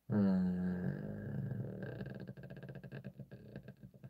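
A man's long, drawn-out thinking vocalisation, an "mmm"/"eee" held at a steady pitch, that trails off over the last two seconds into a rattling, creaky vocal fry.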